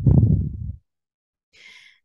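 A narrator's heavy breath out or sigh close to the microphone, then a faint breath in near the end.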